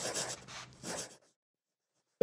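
Pen scratching across paper in several quick strokes, like a signature being written, stopping just over a second in.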